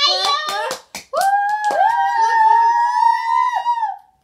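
Girls' voices laughing, with a few sharp hand claps, then from about a second in a long, high-pitched held vocal 'aaah' that lasts nearly three seconds.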